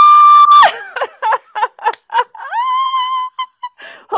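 Women cheering with loud, high 'woo' calls: one long held 'woo' that breaks off about half a second in, a few short whoops, then a second 'woo' that rises and holds for about a second.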